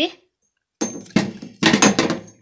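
Clicks and handling knocks of a Campark 4K action camera in its clear plastic waterproof housing as its power button is pressed, with a short high beep about a second in.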